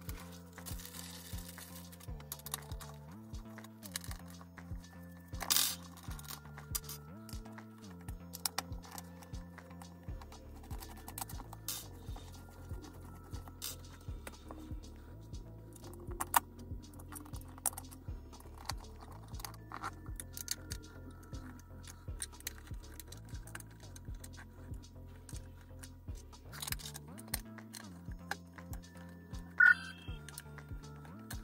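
Background music with a steady beat and a repeating bass line, over scattered clicks and rattles of hands handling a metal chair tilt mechanism and its screws.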